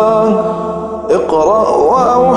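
Nasheed sung by several layered voices. They hold one long note that fades just before a second in, and then a new phrase starts with an ornamented, winding melody.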